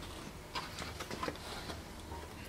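A few faint small clicks and taps over low background noise, spread between about half a second and a second and a half in.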